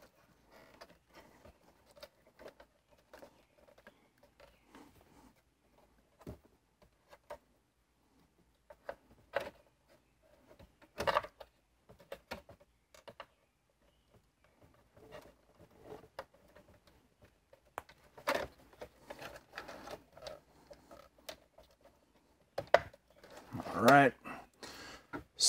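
Scattered faint clicks and rustles of plastic electrical connectors and wiring being handled and plugged into the back of a car's dashboard screen, with a few sharper clicks near the middle and about two-thirds through.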